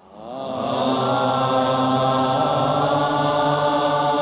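A deep chanted mantra tone, rich in overtones, which slides briefly into pitch and swells up over the first second, then is held steady.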